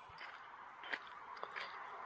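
Faint footsteps on dry forest floor of dirt, pine needles and twigs, with a few light crunches and clicks.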